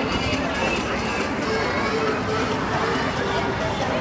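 Indistinct voices talking, no words made out, over a steady low rumble.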